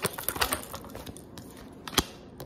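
A deck of tarot cards being shuffled by hand: a quick run of card clicks and riffles that thins out, then one sharp click near the end.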